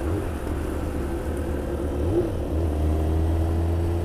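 Motorcycle engine running steadily at cruising speed, recorded from the rider's own bike, with a brief wobble in the engine note about two seconds in.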